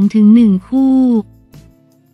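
A woman's voice reading Thai news narration, ending on a drawn-out word about a second in. Faint steady background music carries on underneath after the voice stops.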